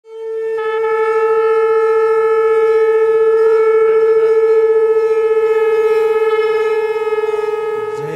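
A conch shell (shankh) blown in one long, steady note that swells in at the start and wavers slightly near the end.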